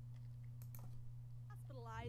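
A few separate keystroke clicks on a computer keyboard over a faint, steady low hum.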